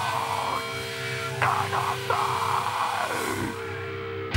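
Electric guitars through stage amps sustaining held notes and feedback, with a few louder swelling, pitch-bending bursts on top, while the band waits to start a hardcore song.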